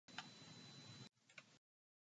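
Near silence: faint room tone with two small ticks, then the sound cuts to dead silence about one and a half seconds in.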